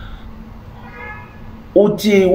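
A lull in a man's unaccompanied singing: low room tone with a faint, brief high-pitched tone about halfway through, then his singing voice comes back near the end.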